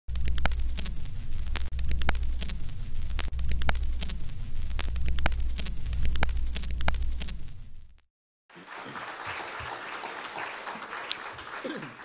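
Electronic intro music with a deep steady bass and sharp clicking beats, which cuts off suddenly after about eight seconds. After a brief silence, an audience applauds.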